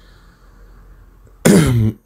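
Low room tone, then a man clears his throat once, briefly, near the end.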